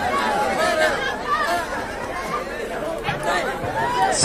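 Crowd chatter: many people talking at once, at a moderate level.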